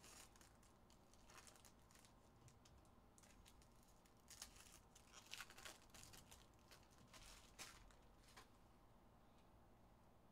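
Foil trading-card pack wrappers being torn open and crinkled by hand: faint crisp rustles and crackles, with the busiest burst about halfway through and a last one a couple of seconds later.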